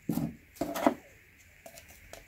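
Paper-element cartridge oil filters and a digital caliper being handled on a wooden tabletop: two short knocks and scrapes in the first second, then a few faint clicks.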